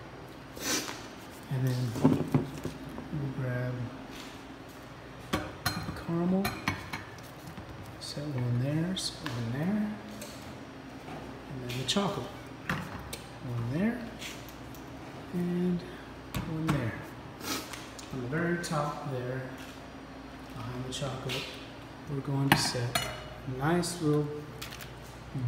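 Repeated clinks and knocks of metal-lidded dispensers, bowls and bottles being set down and moved around on a countertop and wire rack, with an indistinct voice at times.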